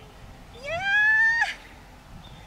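A woman's drawn-out cry that rises in pitch for about a second and breaks off sharply, reacting as a short putt just misses the hole.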